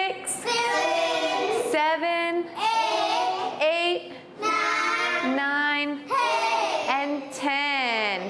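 A woman and a class of young children chanting the numbers aloud together in a drawn-out, sing-song voice, one long number after another, counting up the number line.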